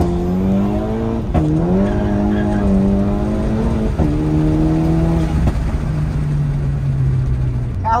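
Turbocharged Volkswagen Jetta's engine heard from inside the cabin while driving. The engine note dips and climbs again about a second and a half in, then drops to a lower pitch at about four seconds as it changes up a gear, and holds steady revs after that.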